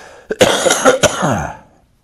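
An older man coughing into his fist: a breath in, then two sharp, loud coughs about half a second apart that trail off.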